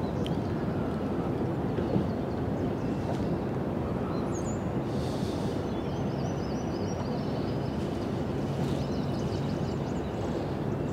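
Steady low rushing of fast-flowing river water and wind, with faint bird chirps now and then high above it.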